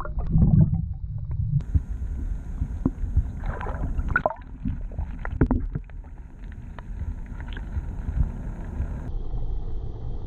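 Muffled rumble and gurgling of water, with scattered knocks and clicks and a short louder splashy patch a few seconds in. The background changes abruptly twice.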